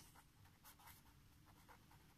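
Faint scratching of a pen writing on paper: a quick, irregular run of short strokes as letters are written.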